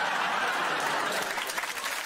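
Studio audience laughing and applauding, a dense steady wash of clapping.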